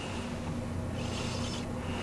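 Steady low electrical hum of room tone, with a faint brief hiss about a second in.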